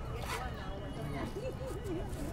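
Outdoor crowd ambience: passersby's voices talking indistinctly, one voice rising and falling in pitch in the second half, over a steady low rumble, with a few brief scuffs.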